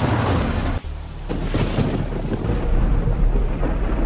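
Thunder rumbling over a hiss of rain. The sound breaks off abruptly a little under a second in, and a deeper, steady rumble carries on after.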